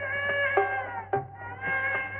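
Instrumental film background score: a sustained melodic line with sliding pitch over plucked string notes.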